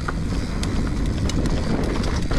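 Mountain bike riding fast along a dirt forest trail: tyre rumble and wind on the microphone, with scattered ticks and rattles from the bike. It jumps up in loudness right at the start and then stays level.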